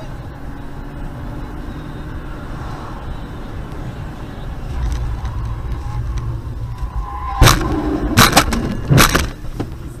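Steady car engine and road noise, then a crash: a loud bang about seven and a half seconds in, followed by several more sharp bangs over the next two seconds.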